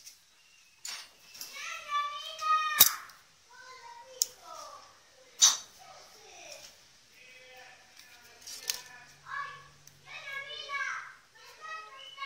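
Children's voices chattering, high-pitched, with several sharp clicks; the loudest click comes a little before three seconds in.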